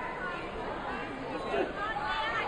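Indistinct chatter of spectators and officials in a large sports hall: background voices, no single clear speaker.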